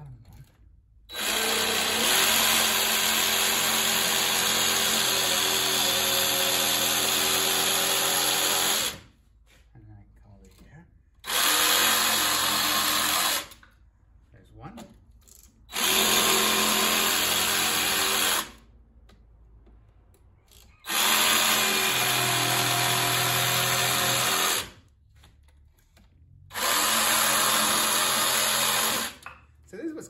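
Jigsaw cutting a wooden board in five runs: one long cut of about eight seconds, then four shorter ones of two to four seconds each, with short pauses between them.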